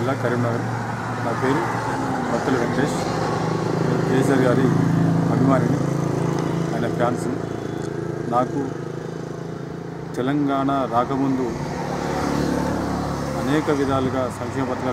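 A man speaking into news microphones, with a steady low hum underneath that swells about halfway through and then fades.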